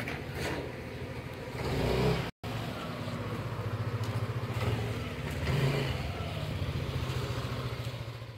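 Motorcycle engine running as it rides along, rising in loudness about two seconds in. The sound drops out for a moment just after.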